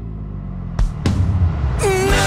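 Pop-rock ballad instrumental passage: a sustained low bass and keyboard bed, two loud drum hits about a second in, then the full band crashes back in near the end.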